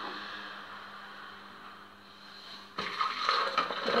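Warm milk with garlic being poured into a plastic blender jar: a steady liquid pour that thins out gradually, then a louder, rougher splashing about three seconds in.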